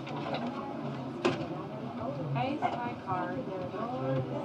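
Faint voices in the background, with a single sharp click about a second in.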